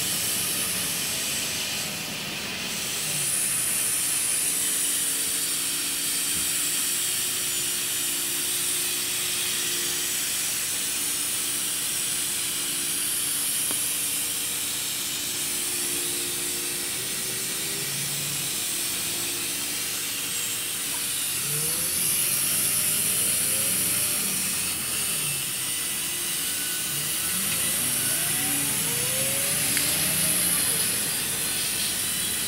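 Ride noise inside a city bus: steady road and engine noise with a high hiss. For much of the time a steady whine sits over it. Later the engine and transmission pitch rises in several repeated sweeps as the bus accelerates.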